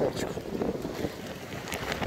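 Waves breaking and washing up the shore, with wind buffeting the microphone.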